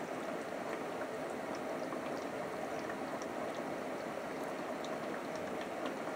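Steady hissing background noise with a few faint ticks.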